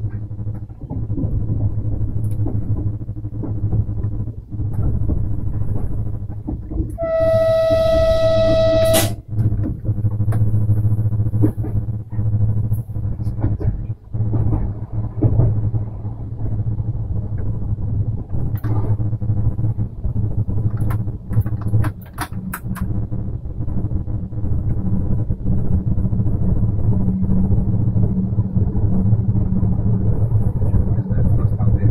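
Stadler KISS electric multiple unit running, heard in the driver's cab as a steady low hum with a rumble of the running gear. About seven seconds in, a single loud steady signal tone sounds for about two seconds and cuts off sharply. A few sharp clicks come about two-thirds of the way through.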